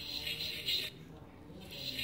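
Musical greeting card's sound module playing its tinny electronic tune, faint, through its small speaker. It sounds for about the first second, drops away, and comes back near the end.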